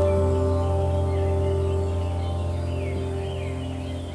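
Soft background music of long held tones, slowly growing quieter, with faint bird-like chirps over it.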